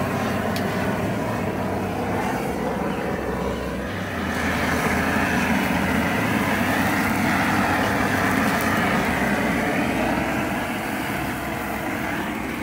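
A propane torch burning steadily as its flame is played over a wild hog's hide to singe it. The rushing noise grows a little louder about four seconds in.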